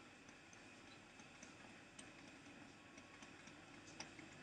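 Near silence with faint, irregular ticks of a stylus tapping and writing on a tablet screen.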